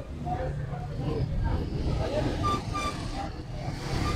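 Street ambience: a steady low rumble of traffic with faint voices in the background, and two short, clear tones a little past halfway.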